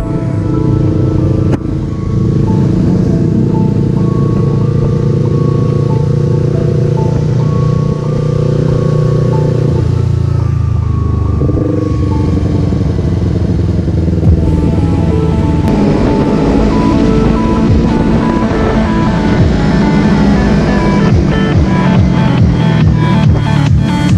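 Background music over a Yamaha sport motorcycle's engine running at road speed; the engine note dips about ten seconds in, then picks up again.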